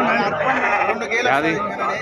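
Sheep bleating among men's voices talking close by.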